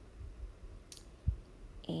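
Quiet handling sounds of a foam ink blending tool being worked over a plastic stencil on cardstock, with a light click about a second in and a soft thump just after.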